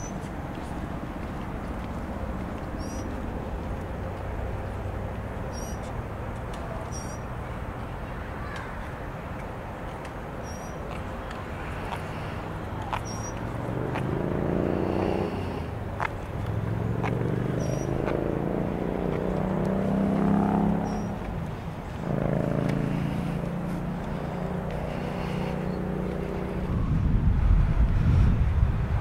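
Road traffic: a steady rumble, then from about halfway through three engines in turn rising in pitch as vehicles pick up speed and pass. Thin high chirps repeat every second or two over it.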